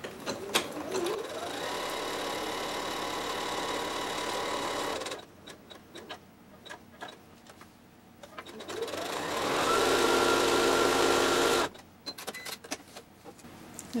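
Domestic electric sewing machine sewing a close zigzag stitch in two runs. The first run lasts about four seconds and starts about a second in. After a pause with small clicks of handling, a second, louder run speeds up from about nine seconds and cuts off suddenly near twelve seconds.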